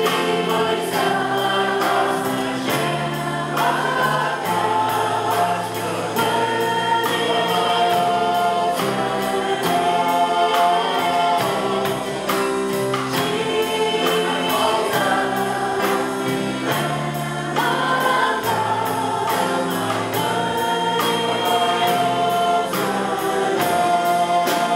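A church worship band playing live: several voices singing together over keyboard, guitars and drums, with a steady beat and long held notes.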